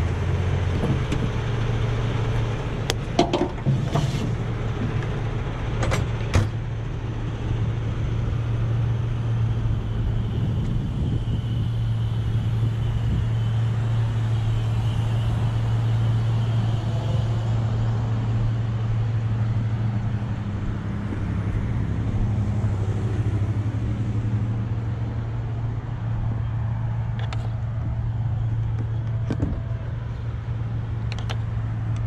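Heavy tow truck's diesel engine idling steadily, with road traffic passing close by and a few sharp clicks between about three and six seconds in.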